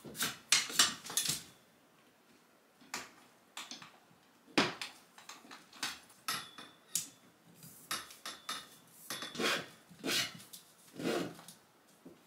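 Metal curtain rod and its hardware clinking and rattling as curtains are slid along it, taken down and rehung: a quick cluster of clinks at the start, then scattered single clicks and rattles about every second.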